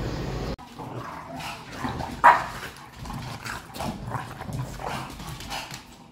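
Two dogs playing together: short scuffles and clicks on a wooden floor mixed with brief dog vocal sounds, the loudest a single short bark a little over two seconds in.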